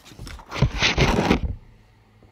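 A sheet of painting paper being slid and handled on a wooden tabletop: a scraping rustle lasting about a second, with dull knocks under it.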